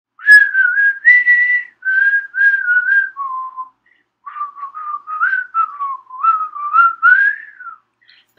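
A person whistling a lively tune in short phrases of quick notes, with a brief pause about halfway through.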